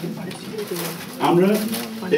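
Speech only: a man speaking Bengali haltingly, with a quiet stretch and then a drawn-out word, "amra" ("we"), starting just past a second in.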